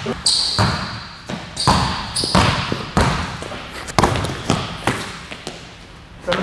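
A basketball bouncing on a hardwood gym floor: a series of sharp, irregular thuds that echo in the large hall, with brief high squeaks in the first couple of seconds.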